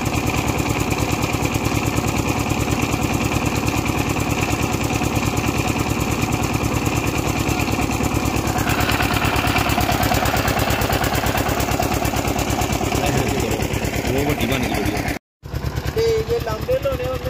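An engine running steadily with a fast, even beat. The sound cuts out for a moment near the end.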